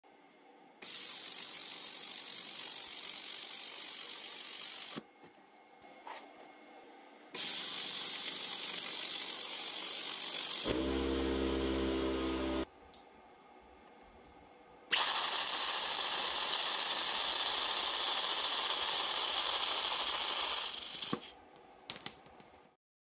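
Handheld torch of an Xlaserlab X1 pulse laser welder running on compressed air: a steady hiss of air from the torch tip in three stretches of several seconds each, each starting and stopping abruptly. About halfway through, a low buzzing tone joins the hiss for about two seconds.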